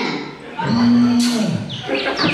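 A single drawn-out cow moo, held level for about a second and dropping in pitch at the end.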